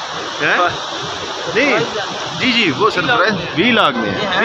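Men's voices in short bursts of talk over a steady rush of running water from a mountain stream.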